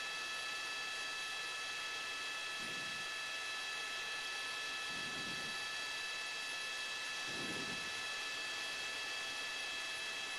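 Steady hiss with several fixed high-pitched tones: helicopter cabin noise picked up through the reporter's headset microphone. Three faint low murmurs come through it a couple of seconds apart.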